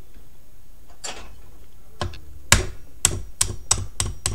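Claw hammer tapping a pin punch to drive the little black body pin out of a G&G Raider airsoft rifle's receiver. The sharp taps start about halfway through and come roughly three a second, the second tap the loudest.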